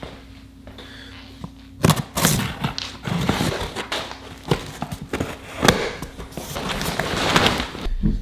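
A knife cutting open a cardboard shipping box, then its flaps and plastic wrapping being pulled open. The scraping, rustling and knocks start about two seconds in, over a faint steady hum.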